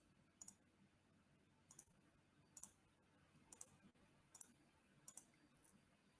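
Computer mouse clicking: six quick pairs of clicks, roughly one pair a second, faint over near silence.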